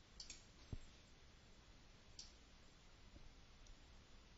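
A few faint, scattered clicks of a computer keyboard and mouse, with a couple of soft low thumps, over near silence.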